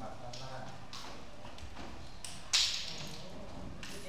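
Low murmur of worshippers' voices with scattered light taps and knocks, and one sharp, louder clatter about two and a half seconds in that dies away quickly.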